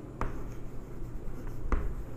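Chalk writing on a blackboard: faint scratching strokes with two sharper taps, one just after the start and one near the end.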